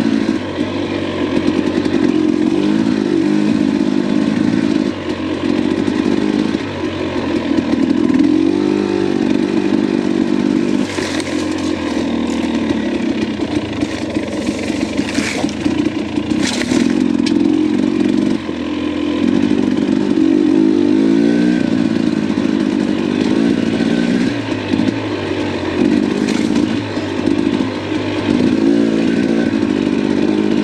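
Dirt bike engine running at low speed on single track, the revs rising and falling as the throttle is worked.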